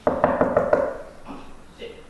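A quick run of knocks on a wall, about five in under a second, with a voice sounding over them, fading out after about a second.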